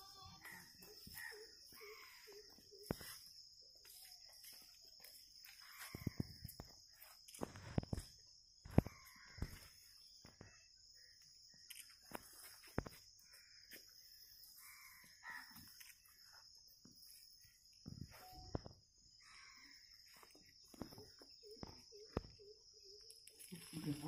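Faint outdoor ambience: distant voices or calls, a steady high-pitched whine, and scattered knocks and clicks, the loudest a little before the middle.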